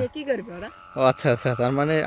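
Voices talking, with a long drawn-out voiced call about a second in, over a thin steady high hum from the flying kite's hummer (its 'dak').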